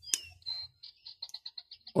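A sharp metal click as a small flat screwdriver blade on a stainless-steel multitool is swung open. This is followed by a fast trill of high chirps, about ten a second, from a small animal.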